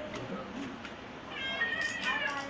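A single high-pitched meow-like call about a second long, starting about halfway in and falling in pitch at its end. Faint clicks from a metal padlock being handled sound under it.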